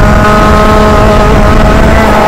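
Senior Rotax Max 125 kart's single-cylinder two-stroke engine running at high revs at a nearly steady pitch, heard from the driver's seat with wind rumbling over the helmet-mounted microphone.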